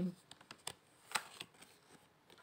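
Tarot cards being handled on a table: a few soft slides and light snaps of card stock as cards are picked up from the spread, the sharpest snap about a second in.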